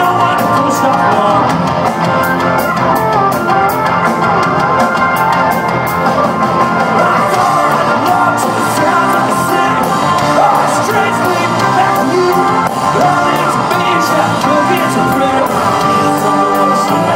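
Live rock band playing loud, amplified, with electric guitars, drums and keyboard, heard from within the audience.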